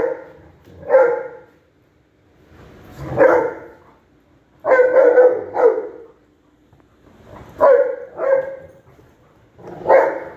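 Dogs barking in play, short barks singly or in quick pairs and threes every second or two, with brief quiet gaps between.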